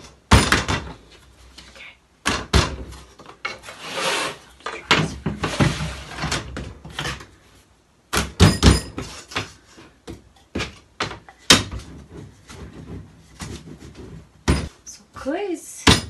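Hands, a cutting tool and a wooden rolling pin working a clay slab on a wooden board: a run of irregular knocks and thumps on the board and table, with scraping and rustling in between.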